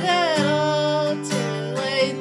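A woman singing a slow, sustained melody to her own strummed acoustic guitar, with a bending vocal line over held chords and a fresh strum near the start and again at the end.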